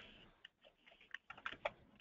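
Faint computer keyboard typing: a few irregular key clicks, coming faster in the second half.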